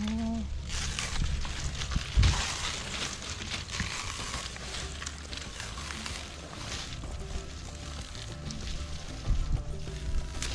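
Coconut palm frond leaflets rustling and crackling as the frond is handled and pulled apart, loudest in the first few seconds, over background music.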